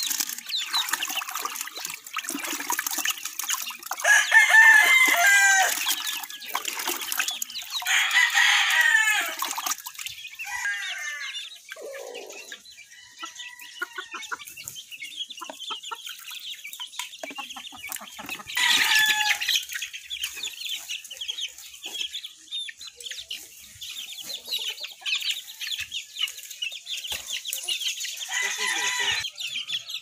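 Roosters crowing, about four long crows spread through, with softer chicken clucks and chirps in between.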